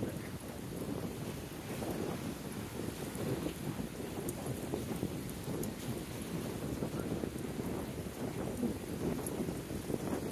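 Wind buffeting the microphone in a steady, gusty rush, with footsteps on a concrete pier walkway.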